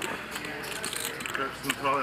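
Faint background voices with a few light clicks.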